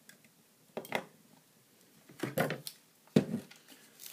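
Plastic clicks and knocks of batteries being pressed into a weather station display's battery compartment and the unit being handled on a wooden table. There are a few short clatters about a second in and around two and a half seconds, and a sharp knock near the end.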